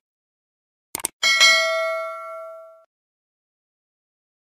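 A quick click, then a bright bell ding that rings out and fades over about a second and a half: the sound effect of a YouTube subscribe-button click and notification bell.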